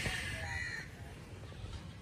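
A faint bird call about half a second in, over a quiet, steady outdoor background hum.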